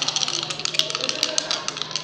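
A pair of red ten-sided dice rattling rapidly in cupped hands as they are shaken, a quick irregular clicking throughout.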